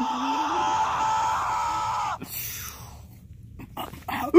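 A person's voice making a drawn-out, high-pitched nonverbal squeal, with a lower wavering vocal sound under it. It breaks off abruptly about two seconds in, and only quieter sounds follow.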